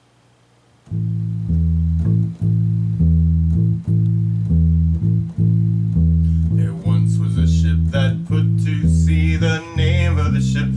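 Electric bass guitar plucking a steady rhythmic figure of low notes over an A-minor chord. About seven seconds in, a man's voice starts singing the sea shanty over the bass.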